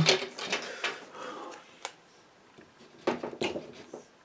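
Scraping at watercolour paper to lift paint: short scratchy strokes just after the start and again in a cluster about three seconds in, with a single sharp click in between.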